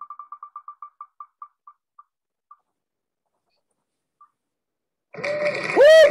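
Wheel of Names spinner's tick sound as the wheel coasts to a stop: quick clicks that slow and space out, with a last few stray ticks up to about four seconds in. Near the end a loud burst of noise and a voice break in as the winner comes up.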